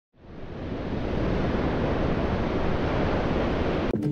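A steady rushing noise, like surf or static, that fades in over about the first second and cuts off suddenly at the end.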